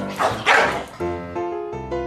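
A corgi barks twice in quick succession over background music. After about a second only the music continues.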